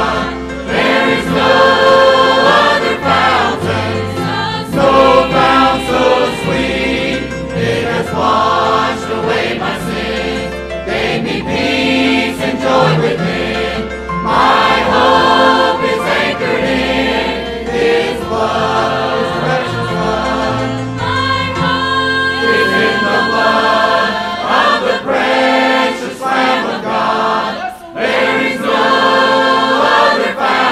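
A large church choir singing a gospel hymn in parts, with piano accompaniment.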